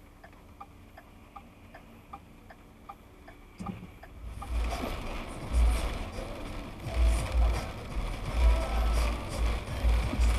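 Car turn-signal relay clicking steadily, about two clicks a second, over a quiet idle in the cabin. About four seconds in it gives way to louder road noise from driving on a wet road, with low uneven rumbles on the dashcam microphone.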